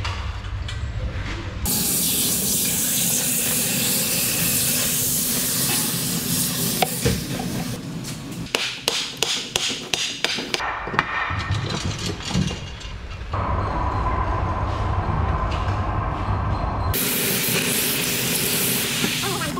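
Breaking an aluminium casting out of its crumbling mould: stretches of steady hissing and, in the middle, a run of sharp knocks and clatter as the mould material is broken and falls away. Near the end comes a sizzling hiss as water is poured over the hot ingot to quench it.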